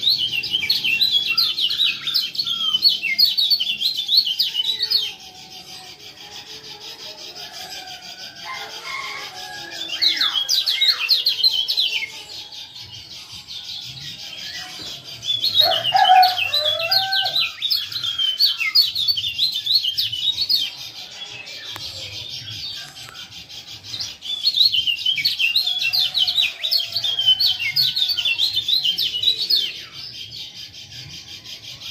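Kecial kuning (Lombok white-eye) giving rapid, high 'ciak ciak' chattering calls in four bouts of a few seconds each. Quieter, lower chirps fill the gaps between bouts.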